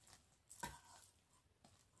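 Near silence, with a faint brief scrape about half a second in as a spatula stirs thick melted soap in a steel bowl.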